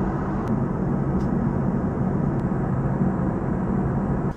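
Steady cabin noise of an Airbus A330-900neo airliner in cruise, heard from a window seat beside the wing: a low, even rush of airflow and the Rolls-Royce Trent 7000 engines.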